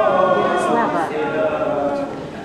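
A woman and a man singing a traditional Russian folk song together, unaccompanied. They hold long notes, with a slide down in pitch about a second in.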